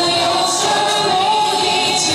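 A woman singing a pop song live into a handheld microphone over a backing track with a steady beat, holding a long note in the second half.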